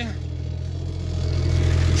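Small site dumper's engine running steadily with a low hum while being driven, getting a little louder toward the end.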